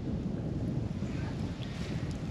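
Steady low wind rumble on the microphone, with faint sloshing of shallow pond water.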